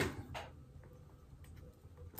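Mostly quiet, with a short faint rustle about a third of a second in and a few light ticks as a small paper decoration is picked off the top of a cake by hand.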